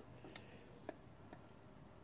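A few faint small clicks, three in all, as a 1/64 scale toy draper header is handled and slid on a wooden table, against near silence.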